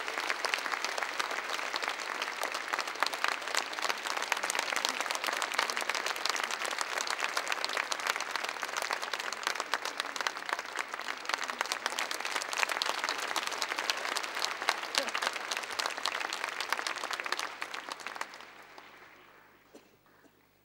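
Theatre audience applauding, a dense steady clapping that dies away near the end.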